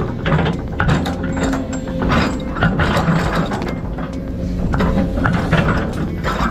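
Case CX210D excavator's steel tracks clanking and rattling as it travels, with the diesel engine running underneath as a steady low rumble.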